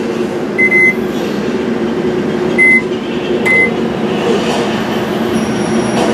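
Built-in microwave oven running with a steady hum, its keypad beeping three short times in the first four seconds.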